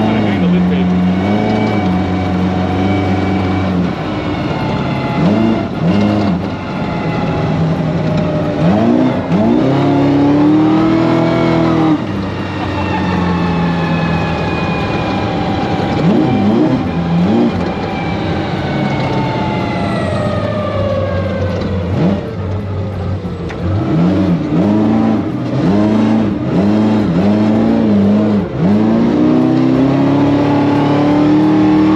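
Big-block V8 of a 1978 Ford F-250 prerunner, heard from inside the cab, revving up and easing off again and again as the truck is driven. Its pitch falls in a long glide in the middle, and near the end it gives about five quick rev blips in a row.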